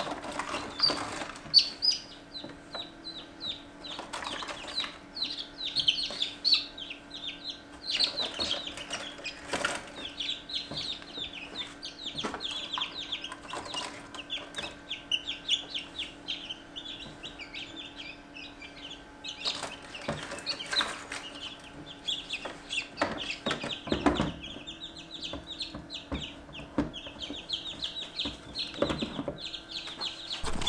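Newly hatched chicks peeping continuously in quick, high, falling chirps while they are lifted out of an incubator into an oilcloth bag. Knocks and rustles of handling come at intervals, over a faint steady hum.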